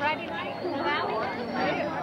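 Several young people talking at once close by: overlapping chatter.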